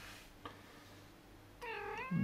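A domestic cat meowing once near the end, a short call that bends slightly upward in pitch as it finishes.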